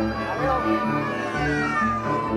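Live folk band playing a polka, an accordion among the instruments, over a steady two-beat bass rhythm. The melody slides downward near the end.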